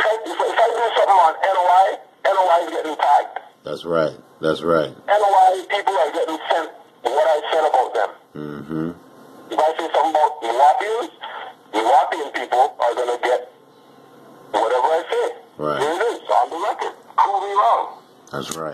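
Speech: a voice talking in quick phrases with short pauses between them.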